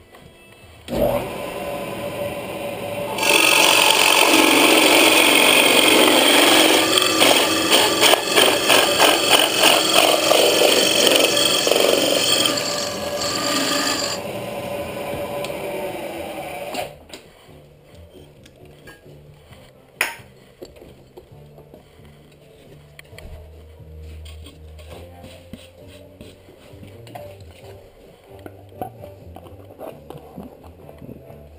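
A drill press spins up about a second in, and its 3-inch carbide-tipped Spyder hole saw cuts loudly through a wooden board for about nine seconds. The press then runs free for a few seconds and switches off. After that come a single sharp click and light handling.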